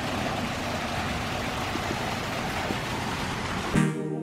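Water pouring from a garden fountain's pot-shaped spout and splashing into the stone basin below, a steady, even rush. Near the end it cuts abruptly to dance music.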